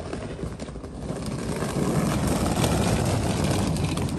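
Rolling suitcase wheels clattering over paving stones, growing louder about two seconds in.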